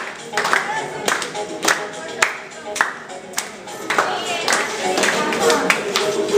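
A group clapping hands in a steady beat, a little under two claps a second, with many voices singing and calling over it.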